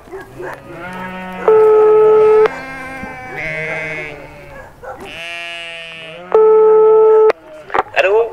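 A flock of sheep bleating, many calls overlapping and wavering in pitch. Twice, about a second and a half in and again past six seconds, a loud, perfectly steady tone holds for about a second; these are the loudest sounds.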